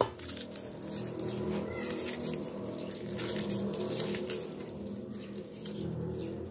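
A kitchen knife chopping on a thick wooden board: a sharp knock at the start, then irregular taps. A steady low hum runs underneath.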